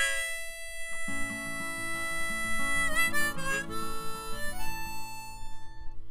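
Harmonica playing a long held note, with a bend about halfway through and then more held notes that ease off near the end. Steel-string acoustic guitar chords join in about a second in.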